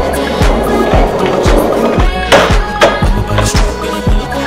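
Skateboard rolling on pavement, with a sharp clack of the board a little past two seconds in, over music with a steady beat.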